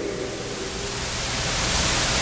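Steady hiss of broad background noise, growing gradually louder, with a faint low hum beneath it.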